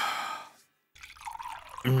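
Water poured from a plastic jug into a glass, a splashy trickle starting about a second in. A short burst of noise comes right at the start.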